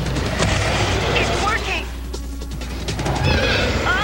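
Animated action soundtrack: laser-blaster fire and the hound's animal cry over dramatic music.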